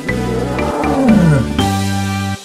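Children's song backing music with a steady beat, under a cartoon tiger roar sound effect that falls in pitch about a second in.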